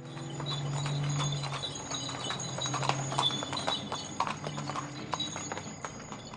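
Horse's hooves clip-clopping on a paved street as it pulls a horse-drawn carriage, in a quick irregular run of strikes.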